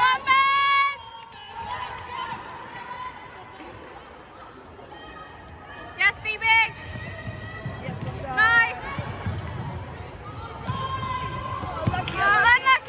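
Sports shoes squeaking sharply on a wooden sports-hall floor as players run and cut: one squeak at the start, a quick run of squeaks about halfway, another a couple of seconds later and more at the end, over running footfalls and faint background voices.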